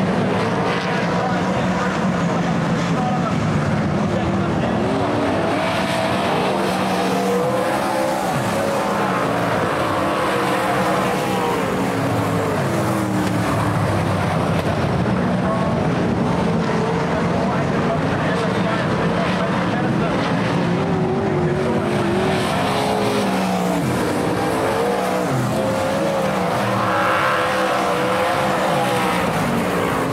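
Engines of a pack of winged dirt-track race cars racing together, several overlapping engine notes rising and falling in pitch as the cars accelerate and back off around the oval.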